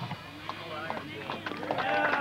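A punk rock band's loud playing breaks off at the very start, leaving a lull of voices with scattered small clicks and knocks.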